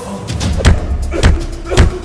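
Action soundtrack music with three heavy thuds of blows landing, about half a second apart, in a fist fight on the floor.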